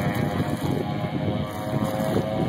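Wind buffeting the microphone over choppy lake water, with a steady engine drone underneath.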